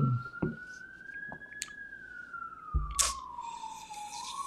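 Emergency vehicle siren wailing, its pitch rising slowly and then falling again over about four seconds. A short hum of voice at the start and a soft thump about three seconds in.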